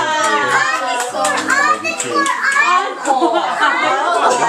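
Several young children's high-pitched voices chattering and calling out over one another, with no pause.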